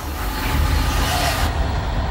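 A loud rushing hiss over a low steady rumble; the hiss cuts off sharply about one and a half seconds in, leaving the rumble.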